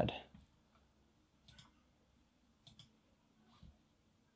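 Faint computer mouse clicks, a few quick pairs about a second apart, as colour controls are adjusted.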